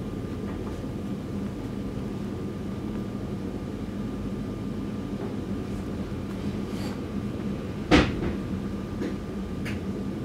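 A steady low hum, with one sharp knock about eight seconds in and a faint click near the end.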